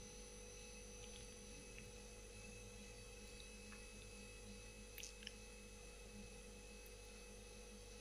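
Near silence: a faint steady hum with a few very faint short ticks.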